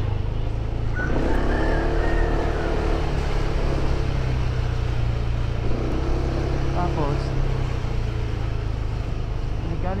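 Motorcycle under way, its engine and wind on the microphone making a steady low rumble, with snatches of muffled voice over it.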